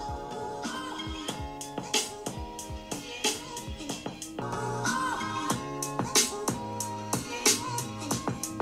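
Music with a steady drum beat, bass and melody, played through a laptop's built-in speakers in a speaker test.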